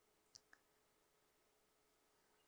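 Near silence: room tone with a faint steady hum, broken by two short faint clicks close together about a third of a second in.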